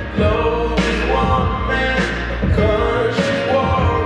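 Song with a singer over a steady beat, playing for partner dancing.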